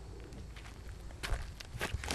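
Footsteps crunching on gravel: a few short steps about a second in and again near the end.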